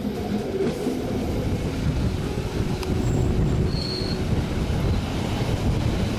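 Bernina Express carriage running along the track: a steady low rumble of wheels on rail, with a brief high wheel squeal about four seconds in.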